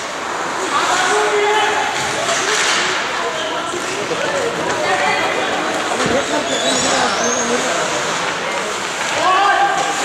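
Indistinct shouting voices echoing around an indoor ice hockey rink during play, with one sharp knock about six seconds in.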